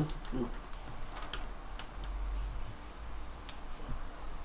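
Spoon tapping and scraping against a ceramic bowl while soy-sauce seasoning is stirred, a scatter of light irregular clicks with a sharper tap near the end.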